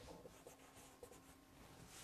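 Faint rubbing strokes of a duster wiping chalk off a chalkboard.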